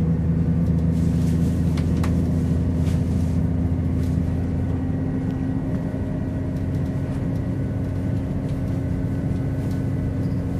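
Steady drone of a Class 170 Turbostar diesel multiple unit's underfloor diesel engine, heard from inside the passenger saloon as the train pulls away from the platform. The engine note steps up in pitch just as it begins and then holds.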